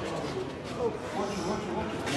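Indistinct voices murmuring in a large hall, low in level, with no clear words.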